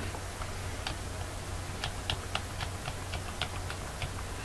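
Light computer-keyboard clicks in an irregular run, mostly in the second half, over a low steady hum.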